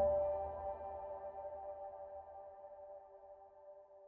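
Soft solo piano music: a chord struck at the start rings on and slowly fades away.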